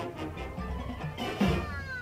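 Full high school marching band playing, brass and percussion together, with a loud drum hit about one and a half seconds in, then a downward pitch slide near the end.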